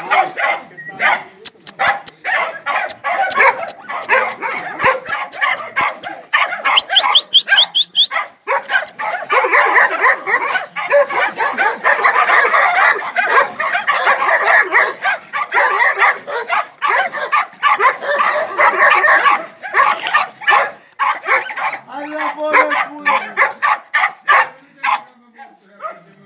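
Several dogs barking and yapping, short calls following one another almost without pause and overlapping most densely through the middle stretch.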